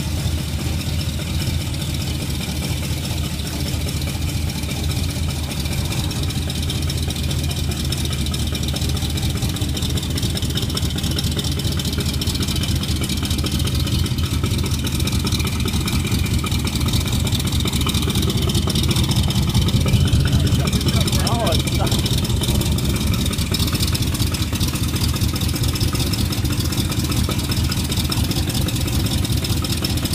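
Carbureted V8 of a custom 1973 Corvette idling through chrome side pipes while the car creeps in reverse, a steady low burble that grows a little louder about two-thirds of the way in.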